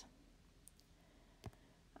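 Near silence with a single faint click about one and a half seconds in.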